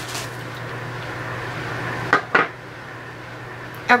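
Hands opening a package of nail polish: a rustling, then two sharp clinks about a third of a second apart a couple of seconds in.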